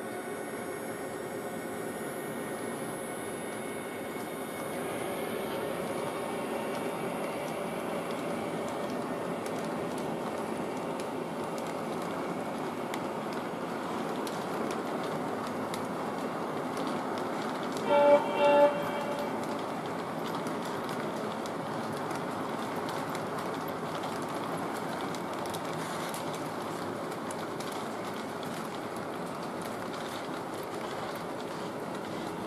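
Three-rail O-gauge model train rolling steadily along FasTrack with a continuous rumble of wheels on the rails, running smoothly over new road-crossing inserts. About two-thirds of the way through, the diesel locomotive's sound system gives two short horn blasts, the loudest sound here.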